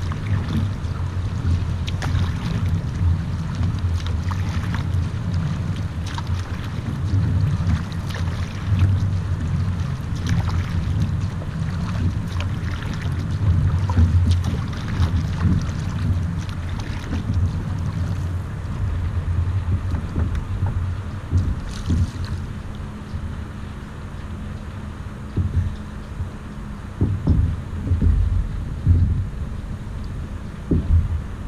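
Wind rumbling on the microphone of a bow-mounted camera on an Epic V10 Sport surfski under way, with the paddle blades catching and splashing in the water at a steady stroke rhythm, roughly once a second.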